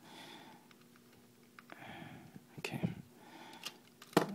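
Faint, scattered clicks and taps of hard plastic parts as a Transformers Roadbuster toy car is handled and a loosened piece is worked back into place.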